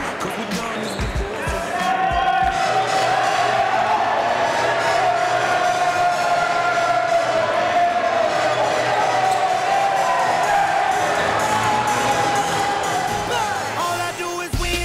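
A singer holding a long, wavering note over the noise of a crowd in a gym, typical of the end of a live national anthem, with a few low thuds in the first two seconds.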